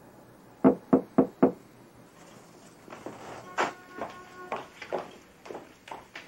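Four quick knocks on a door, evenly spaced, a little under a second in, announcing a caller at the door.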